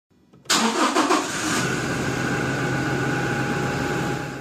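A car engine starting about half a second in, with a short burst as it catches, then settling into a steady idle.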